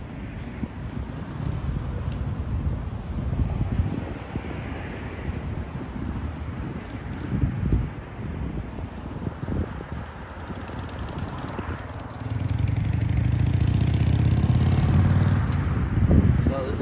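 Outdoor city ambience: wind buffeting the microphone in uneven gusts, with road traffic. A louder, steadier low rumble of a vehicle going by sets in about twelve seconds in.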